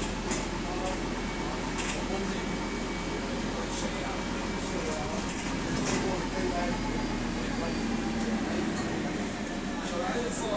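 Interior noise of a single-deck bus in motion: a steady low engine and road hum, with a few sharp rattles or clicks about 2, 4 and 6 seconds in.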